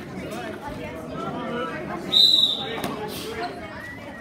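Indistinct voices and chatter echoing in a large gym. A little over two seconds in comes one short, steady, high-pitched squeak.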